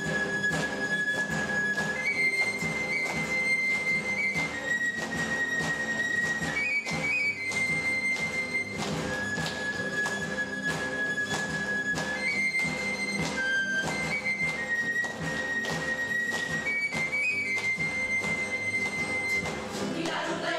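Spanish brass band (agrupación musical) of trumpets and other valved brass playing a slow melody in long held high notes over lower brass parts, with a steady percussion beat.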